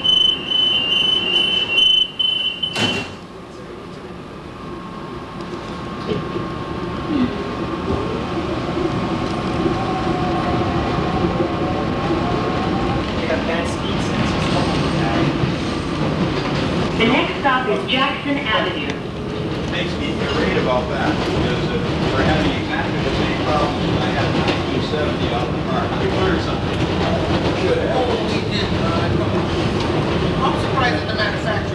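Kawasaki R110A subway car's door-closing warning sounding a rapid 'eek, eek, eek' beep for about three seconds, ending in a knock as the doors shut. The train then pulls away, its motors whining with a tone that rises briefly, and the running noise of wheels on rail builds up and stays loud.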